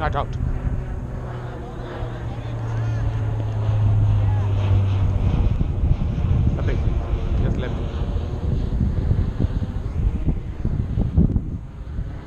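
Wind rumbling on the microphone, with faint, distant voices of players calling now and then. A steady low hum runs through the first five seconds, then stops.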